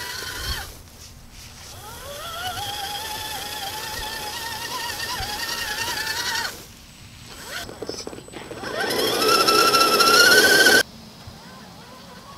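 Electric motor and gear whine of a 4x4 RC truck driving at speed, rising and falling in pitch with the throttle. It drops out briefly in the middle, then climbs higher and louder before cutting off suddenly near the end.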